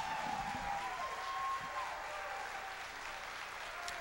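Audience applauding steadily after a speech, with a long held call from someone in the crowd during the first two seconds.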